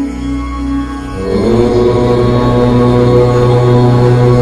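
A low chanted "Om" begins about a second in and is held steadily over a sustained background drone.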